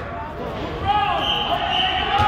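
Children's high-pitched voices shouting and calling across a gym, starting about a second in, with a dull thump or two of a ball on the floor.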